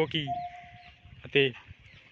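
Electric scooter's faint, steady single-tone beep lasting well under a second as a switch on the left handlebar is pressed, followed by one short voiced call.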